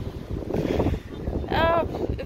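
Wind buffeting the microphone as a steady low rumble, with a person's voice heard briefly near the end.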